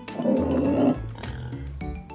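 A cartoon wild boar's rough, noisy call, lasting about a second near the start, over background music.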